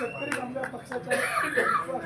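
A man speaking aloud to a gathering, broken about a second in by a short, harsh noisy burst.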